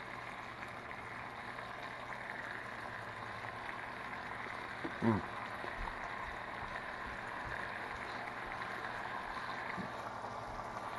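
Chunks of marinated fish fillet frying in butter in a small frying pan: a steady bubbling sizzle.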